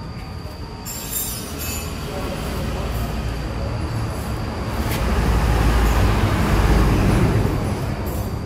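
Low rumble of a passing vehicle, growing louder to a peak between about five and seven seconds in, then easing off near the end.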